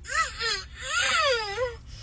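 A high-pitched voice wailing in two long, drawn-out phrases, its pitch sweeping up and down.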